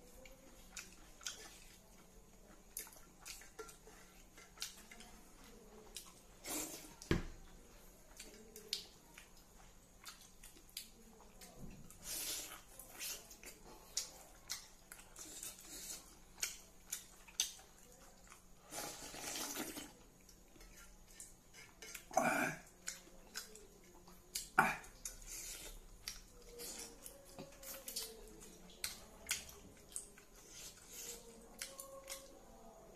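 Close-up eating sounds: fingers mixing and scooping rice and gravy in a steel bowl, with many small wet clicks and a few louder clinks and knocks against the metal bowl, scattered irregularly.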